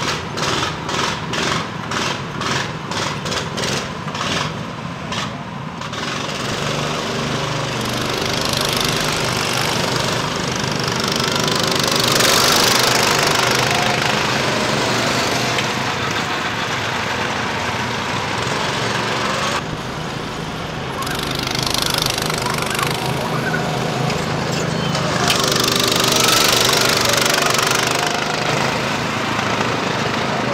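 Go-kart engines running as karts drive around the track. The engine sound starts with a regular pulsing about twice a second, then runs on continuously and swells louder twice as karts pass close.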